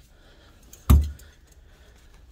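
One sharp clack about a second in: clothes hangers with metal hooks knocking against each other and the rail as hanging jeans are pushed along the rack.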